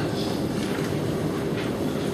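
Steady background hiss and hum of a meeting room, with no speech and no distinct events.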